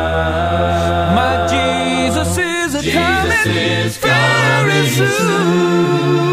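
Unaccompanied male gospel vocal group singing in close harmony. A deep bass holds a low note under a sustained chord for the first couple of seconds, then the voices move into a new phrase after a brief break about four seconds in.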